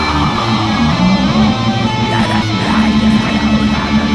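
Loud black-metal music: a dense, continuous wall of electric guitars over sustained low bass notes, with no vocals.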